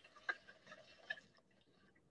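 Near silence, with a few faint clicks in the first second and a half.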